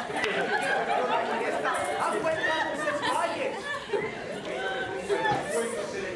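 Several people talking at once, their voices overlapping in the reverberant space of a large hall.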